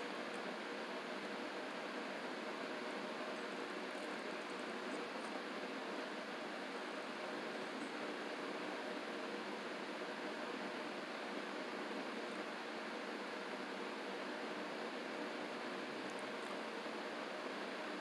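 Steady background hiss of room tone with a faint steady hum, and a few faint ticks.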